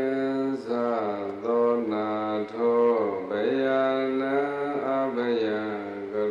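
Buddhist monk chanting solo into a microphone: one man's voice in long, held melodic phrases, the pitch sliding between notes, with short breaks for breath.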